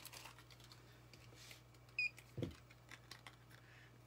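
Faint clicks and light handling noise as small display items are picked up, over a faint steady low hum. About two seconds in there is a short high beep, and just after it a dull thump.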